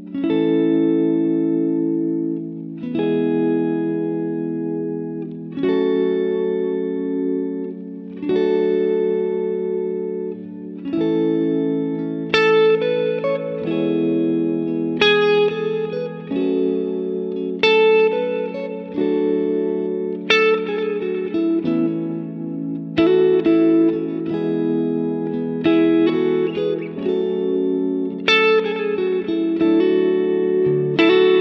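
Electric guitar, a Telecaster-style solidbody, playing triad chord shapes of an A major progression (A, E, F sharp minor, D), one chord about every three seconds. From about eleven seconds in, the same chords return joined by quick single-note fills from the A major scale.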